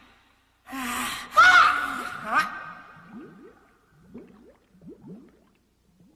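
Cartoon voice of Mario gasping for breath: a loud, strained, gasping cry, as if out of breath. It is followed by a string of short, faint rising blips, a cartoon bubbling effect.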